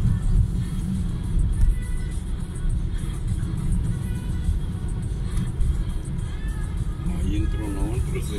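Steady low rumble of a car's engine and road noise heard inside the moving car's cabin, with music playing over it. A voice starts near the end.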